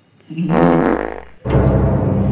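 Comedy fart sound effect dubbed in twice: a buzzy, low sound of about a second, then a louder, longer one starting about a second and a half in.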